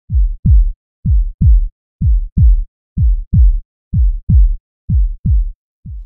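Heartbeat sound: paired low lub-dub thumps, about one pair a second, the last pair quieter as it fades out.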